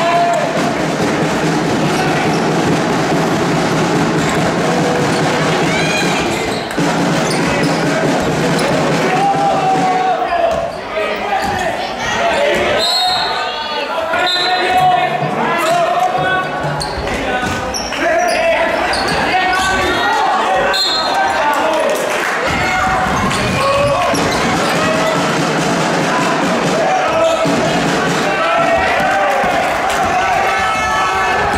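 Basketball game sound in a gym: a ball bouncing on the hardwood floor amid players' and spectators' voices.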